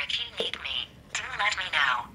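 Speech: the Mabu robot wellness coach's synthesized female voice saying "I will be here if you need me. Do let me know."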